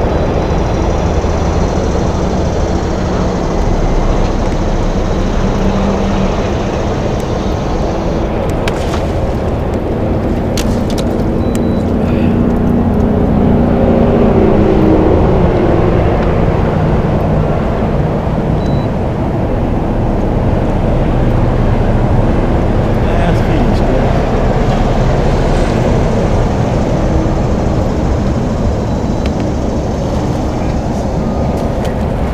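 Steady low rumble of wind buffeting the camera microphone on an open boat, with a faint droning hum under it and a few scattered clicks.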